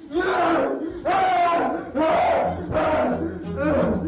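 A group of voices shouting in unison in repeated bursts, about one a second. A low steady drone joins about halfway through.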